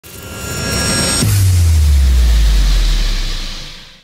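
Logo intro sting in electronic sound design: a rising whoosh with faint high tones builds for about a second, then gives way suddenly to a deep bass boom that slides down in pitch and fades out with a hiss.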